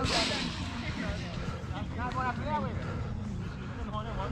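Players' voices shouting indistinctly across the pitch during a pickup soccer game, with a few short calls about two seconds in. A steady low rumble runs underneath, and a brief rush of noise comes at the start.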